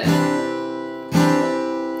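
Acoustic guitar strummed twice on an F major chord, about a second apart, each chord left ringing and slowly fading.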